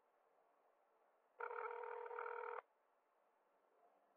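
A single telephone ringing tone heard over the phone line, one steady ring of about a second in the middle, while a call rings through. Faint line hiss otherwise.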